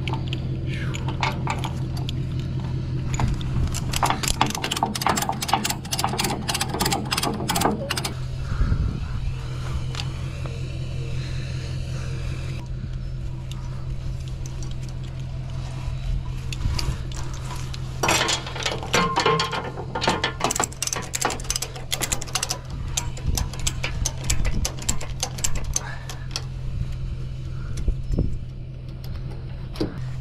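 Ratchet strap binder being cranked to tighten a car tie-down, its pawl clicking rapidly in two long spells, about four seconds in and again from about eighteen seconds in. A steady low hum runs underneath.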